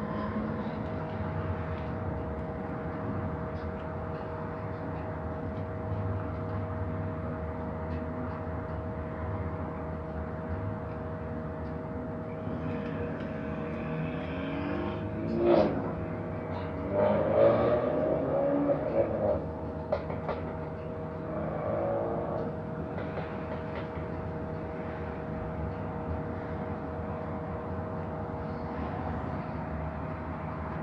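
Steady hum with two constant tones inside a bus idling in traffic. A few seconds of louder, wavering sounds come past the middle.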